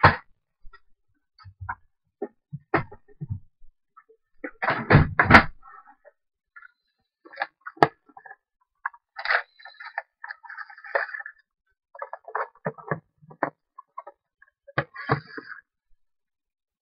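Irregular knocks, taps and clicks of small craft items and tools being handled on a work surface, with a louder pair of knocks about five seconds in and lighter rustling between.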